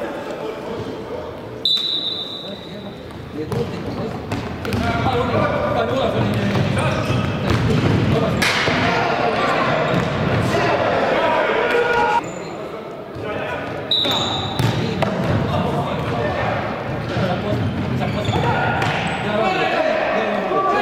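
Futsal match play in a reverberant sports hall: the ball thudding off feet and the wooden floor, players shouting to each other, and a referee's whistle blown briefly twice, about two seconds in and again around fourteen seconds.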